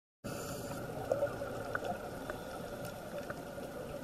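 Underwater ambience picked up by a camera submerged on a reef dive: a steady, muffled water noise with a few faint clicks, starting abruptly about a quarter second in.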